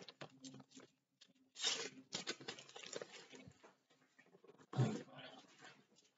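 Sheets of paper being handled and shuffled close to the microphone: a few short, irregular rustles, the loudest about two seconds in and again near five seconds.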